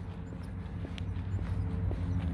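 Footsteps on pavement at a walking pace, about two soft clicks a second, over a steady low hum.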